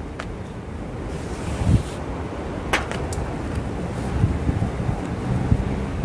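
Wind buffeting the microphone: a steady low rumble, with a couple of faint clicks about three seconds in.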